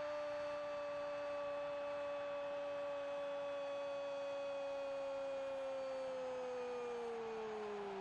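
A Brazilian football commentator's long held 'gooool' cry for a goal: one unbroken shouted vowel at a steady pitch that sags and trails off near the end.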